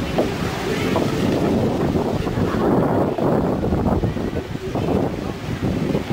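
Wind buffeting the camera microphone in gusts, with ocean surf breaking behind.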